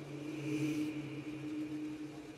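Faint sustained low drone from the outro of a bass-music remix: a steady hum-like tone with a lower note pulsing about twice a second, swelling slightly about half a second in.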